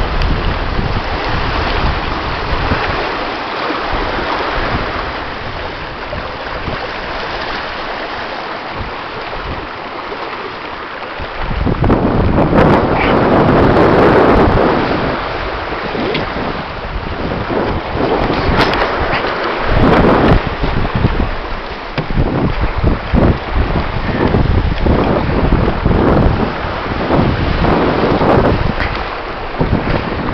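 Wind buffeting the microphone over the rush of water and breaking wake from a small sailboat running fast downwind in a strong breeze. The wind noise grows louder and gustier about twelve seconds in.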